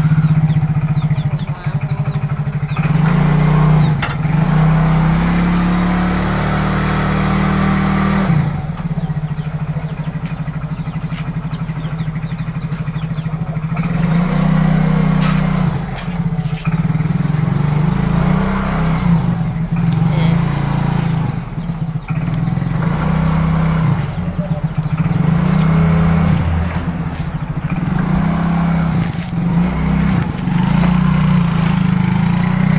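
Small motor scooter engine running just after being started, at low speed. Its pitch rises and falls repeatedly with small throttle changes as the scooter is moved off.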